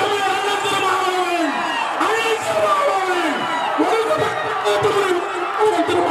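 A large crowd shouting and cheering, many voices overlapping, with long calls that rise and fall over one another.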